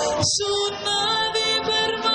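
Amateur wind band of brass and woodwinds playing sustained chords, with a brief break about a quarter second in before the held notes return.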